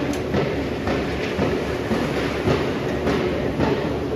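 Plywood factory machinery running: a steady low hum with a faint steady tone, and irregular clanks and knocks about every half second to a second.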